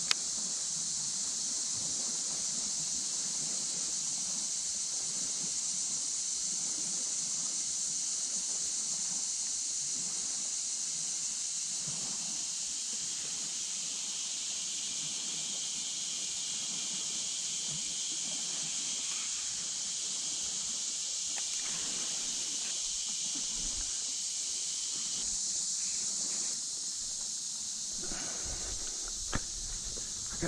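Steady high-pitched drone of an insect chorus in marsh reeds, with a second, lower insect drone under it that stops about 25 seconds in. A few faint rustles and knocks of movement in the reeds toward the end.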